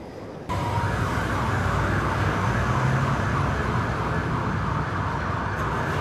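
Street traffic with vehicle engines running, a low uneven engine hum under a steady hiss, starting suddenly about half a second in.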